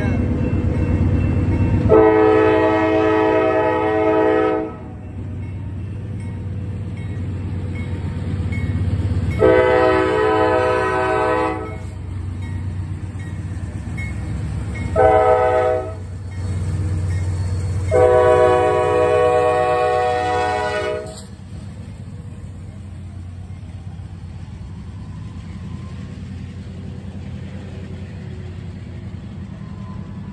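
Norfolk Southern diesel locomotive's multi-chime air horn sounding the grade-crossing signal, long, long, short, long, over the low rumble of the locomotives' diesel engines. After the last blast, the steady rumble of the double-stack container cars rolling past.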